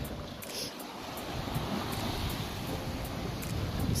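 Sea surf washing and foaming against a rocky shore, a steady wash of noise that swells over the first second or two, with wind on the microphone.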